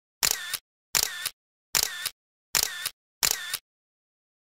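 Five identical short click sound effects, evenly spaced about three-quarters of a second apart, each with a brief tail. They go with an animated YouTube play-button graphic.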